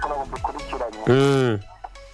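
Electronic music with talking, then, about a second in, a loud drawn-out vocal cry of about half a second that rises and falls in pitch, cut off into a brief lull.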